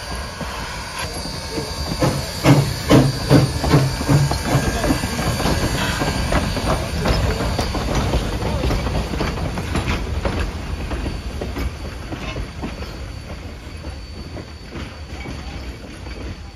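Sierra Railway No. 3, a 4-6-0 steam locomotive, passing close by: a run of rhythmic chuffs, about two and a half a second, with hissing steam a couple of seconds in, then the rumble and clicking of its wheels on the rails, fading as it moves away.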